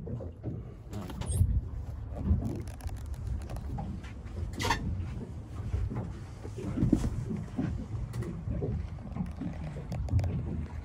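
Volvo Penta 8.1L V8 marine inboard engine idling after a cold start, heard from the open engine compartment, with a few brief sharper noises over the low engine sound.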